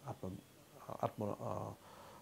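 A man speaking, with a short pause about half a second in, then a drawn-out syllable.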